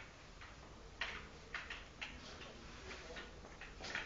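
Broom sweeping a concrete floor: a string of short, scratchy brushing strokes, about two or three a second at an uneven pace.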